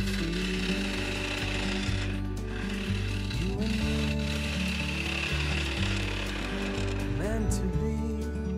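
A bowl gouge cutting the inside of a spalted birch bowl spinning on a wood lathe, a steady hiss of wood being shaved away, heard under background music.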